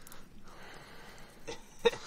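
Faint rustling and scraping of dry twigs and brush as a hand pushes into a shrub to pull out a fossil sea urchin, with a brief sharper sound near the end.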